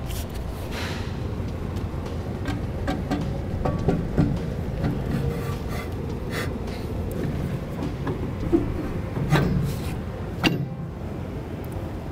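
Trailer hub and brake drum being slid onto the axle spindle over the brake shoes: a few light metal knocks and scrapes, the sharpest ones near the end, over a steady low hum.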